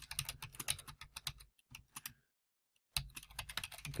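Typing on a computer keyboard: a quick run of key clicks, a short pause a little past halfway, then more typing.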